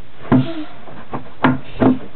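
Three sharp, hollow knocks of hard objects, a faint tap between the first two: one about a third of a second in, then two close together near the end.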